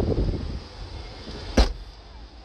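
The tailgate of a BMW 1 Series hatchback being pulled down and shut, with one sharp thud about one and a half seconds in.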